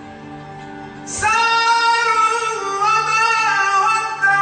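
A song with a soft, steady instrumental accompaniment. About a second in, a high singing voice enters loudly and holds long, wavering notes.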